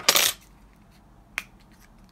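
Small plastic diamond-painting drill containers being handled and put away: a short rattling clatter at the start, then a single sharp click about a second and a half in.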